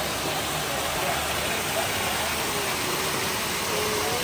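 Water rushing down a small rocky cascade in a rainforest stream: a steady, even hiss. A faint wavering tone runs under it in the second half.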